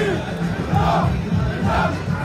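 Music playing with the voices of a large crowd of marchers.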